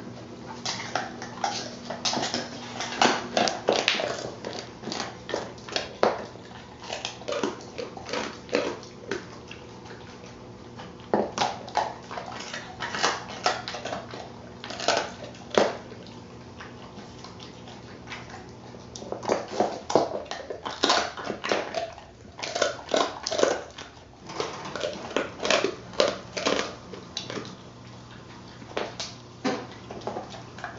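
Dog chewing and crunching a duck neck treat: irregular runs of sharp crunches with short pauses between them.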